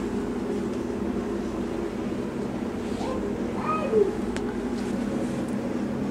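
Steady low indoor background hum, with a short sound that glides up and down in pitch about four seconds in.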